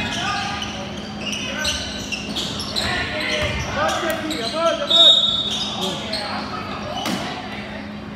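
Basketball game in a large indoor gym: the ball bouncing on the court amid shouts from players and spectators, with a brief high squeal about five seconds in, the loudest moment.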